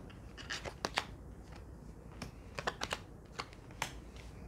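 Oracle cards being drawn from a deck and laid down on a tabletop: a string of short, sharp clicks and taps, in two bunches.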